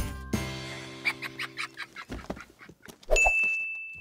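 A short held musical chord fades out, then comes a run of quick squeaky strokes from dry-erase markers writing on small whiteboards. A steady high beep sounds in the last second.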